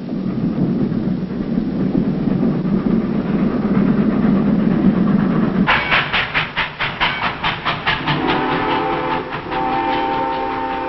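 Steam train running: a low rumble, then from about six seconds in a quick rhythmic clatter of about five beats a second. About two seconds before the end, a steady whistle sounding several notes at once starts blowing.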